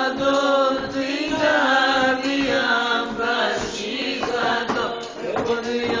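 Pontic Greek folk music: a melody over a steady drone, with a male voice starting to sing near the end.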